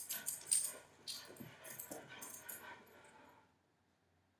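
Faint, muffled dog barking in the background, mixed with light clinks and jingles. The sound cuts off suddenly about three and a half seconds in.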